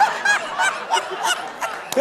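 A man laughing hard in a run of short, high-pitched bursts, about three a second.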